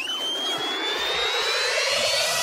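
Electronic riser sound effect: a whooshing swell with a high tone that climbs slowly the whole way, under a lower rising sweep.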